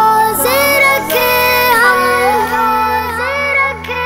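A boy's voice singing a Ramadan nasheed melody in long, gliding held notes, with a steady low drone underneath.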